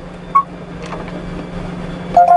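A single short electronic beep from a G-scan2 diagnostic scan tool as its touchscreen is tapped with a stylus, over a steady low hum.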